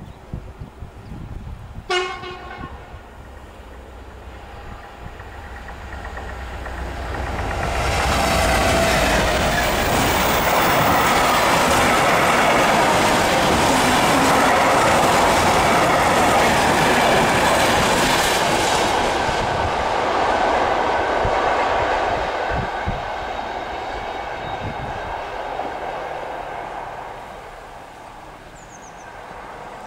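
Class 66 diesel-hauled freight train, its wagons loaded with long pipes, passing over the level crossing at speed. A short horn blast comes about two seconds in. Then the wheel-on-rail clatter and wagon noise build, stay loudest for about ten seconds and fade away.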